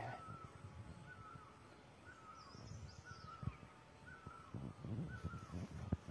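A bird repeating a short call about once a second, with a higher call once midway; faint low knocks near the end.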